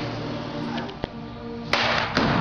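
Background music, with a sharp crack near the end: a baseball bat striking a pitched ball.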